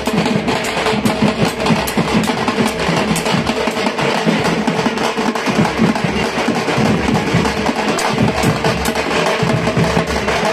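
Loud, fast, continuous drumming on hand-held frame drums, with a steady held tone underneath.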